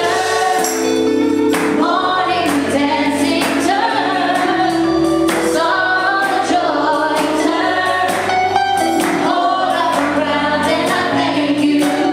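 Several women singing a gospel worship song together in harmony over a band's sustained chords and bass, with a tambourine shaken in rhythm.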